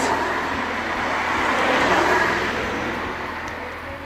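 Road traffic noise: a passing vehicle's rush, swelling and then fading away, ending with a sharp click.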